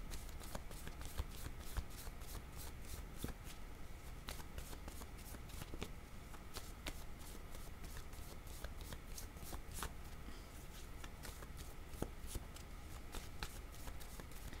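A deck of tarot cards shuffled by hand: a quiet, uneven patter of small card clicks, several a second.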